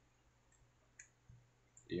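A few faint, short clicks from handling a plastic Epson printer head and a syringe fitted to its ink inlets, the clearest about a second in.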